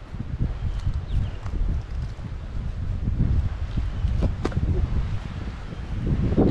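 Wind buffeting the microphone as a low, uneven rumble, with footsteps through grass and dry leaves and a few light ticks, one sharper click about four and a half seconds in.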